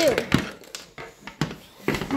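Plastic toy figures being handled and set down on a wooden floor: several light knocks and clicks, with a child's voice trailing off at the start.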